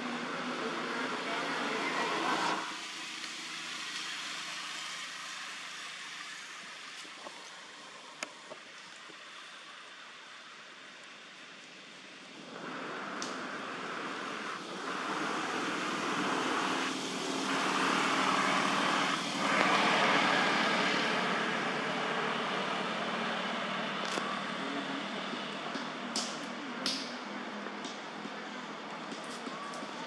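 Steady outdoor background noise with indistinct voices. Its level drops abruptly about two and a half seconds in and rises again past the middle, with a few faint clicks near the end.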